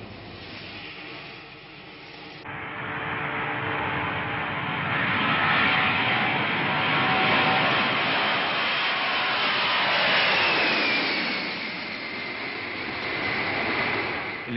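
Boeing 747 jet engines: a quieter steady hum for the first two seconds or so, then a sudden cut to loud engine noise as the airliner takes off. Near the end a whine falls in pitch as the noise eases.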